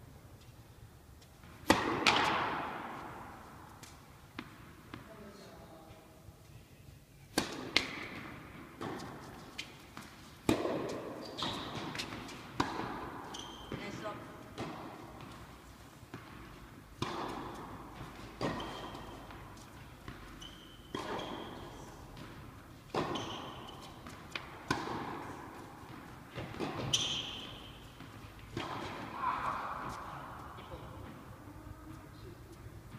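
Tennis balls struck by rackets and bouncing on an indoor court, a string of sharp pops a second or more apart, each echoing around the hall, the loudest about two seconds in; voices murmur in the background.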